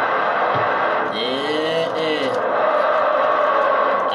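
Television audio heard through the set's speaker: a man's voice holds one long drawn-out vowel that rises and then falls in pitch, over a steady wash of background music and room sound.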